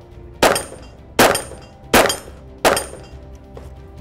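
Four 9mm pistol shots from a Glock 34, fired about three-quarters of a second apart, over background music.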